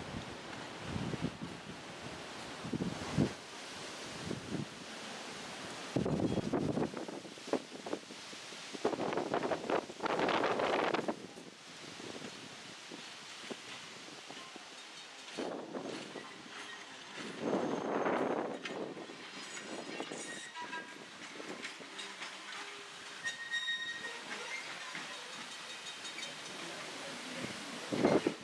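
A train running past at a distance, with its steel wheels rumbling on the rails in several uneven surges that rise and fall. A few faint, brief high-pitched wheel squeals come in the last few seconds.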